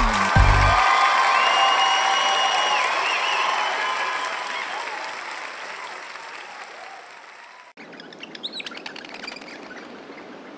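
Applause and cheering at the end of a children's song, fading out steadily over several seconds. After a sudden cut, small birds chirp faintly.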